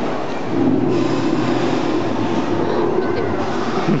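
Animatronic Tyrannosaurus rex's roar sound effect played over loudspeakers in a large hall: a long, low, rumbling growl swelling in about half a second in and held steady.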